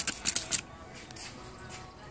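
Hand-held trigger spray bottle spritzing water onto a toroidal transformer: a quick run of short squirts in the first half-second.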